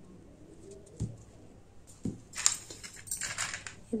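Scissors snipping macrame cord, two sharp snips about one and two seconds in. Then plastic beads clink and rattle against each other and a dish as they are picked up.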